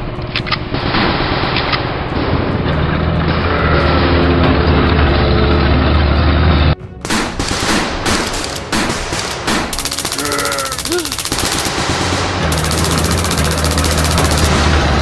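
Battle sound effects of gunfire over background music. Dense firing with a low rumble runs until a sudden cut about seven seconds in. After it come single rifle shots and long bursts of rapid machine-gun fire.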